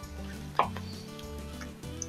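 Soft background music with sustained low notes, and a faint short sound about half a second in.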